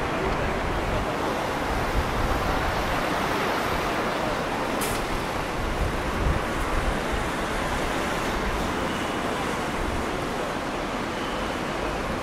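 Steady city street traffic noise: a continuous wash of passing road vehicles, with one brief click about five seconds in.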